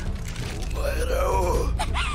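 An anime character's strained, wavering shout of Japanese dialogue from the episode's soundtrack, over a steady low rumble.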